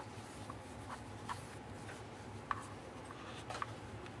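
Faint handling noise from a wristwatch being turned over on a cloth cushion: soft rubbing and a few light, irregular clicks from the steel case and strap, over a low steady hum.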